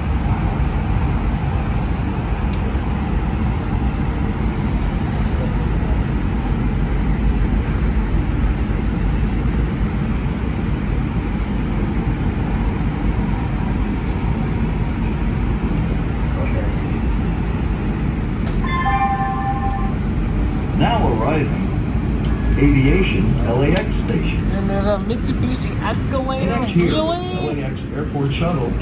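Steady low rumble of an LA Metro P3010 light rail car's motors and wheels on the rails, heard from inside the car as it runs into a station. About two-thirds of the way in a short pitched chime sounds, and voices follow.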